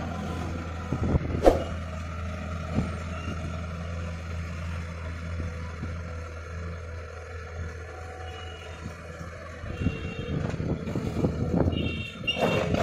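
Diesel engines of a tracked excavator and a farm tractor running steadily with a low hum. There is a sharp knock about a second and a half in, and a run of clanking near the end as the excavator works its bucket over the tractor trolley.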